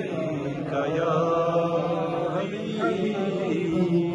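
A man reciting a naat, an unaccompanied devotional chant, singing long, wavering held notes over a steady low drone.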